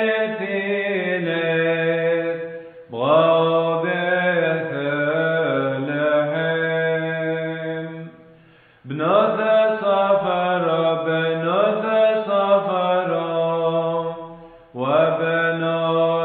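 A Syriac hymn sung in chant style: long phrases that glide up and down in pitch, with short breaths or pauses about 3, 8 and 14 seconds in.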